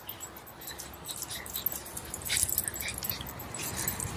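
A Cavalier King Charles spaniel making a few faint, brief whimpers, with scattered light ticks and jingles.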